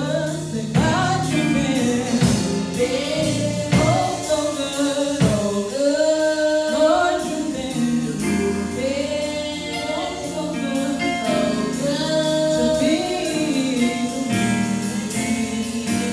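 A small group of female gospel singers singing a praise song together through microphones, over an instrumental backing with a steady, evenly ticking beat.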